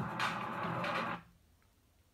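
Television sports channel's broadcast audio with music playing, which cuts off suddenly a little over a second in as the stream is stopped, leaving quiet room tone.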